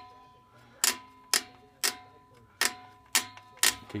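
Star wheel adjuster of a 1967 Mustang rear drum brake being turned by hand, clicking tooth by tooth past the self-adjuster lever as the shoes are spread out toward the drum: about six sharp clicks, roughly two a second.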